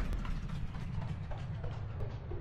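A man drinking from a plastic spring-water bottle: faint gulps and plastic bottle handling over a low rumble of handling noise.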